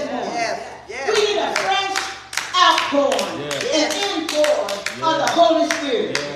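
Hand clapping, several claps a second from about a second in, over voices speaking.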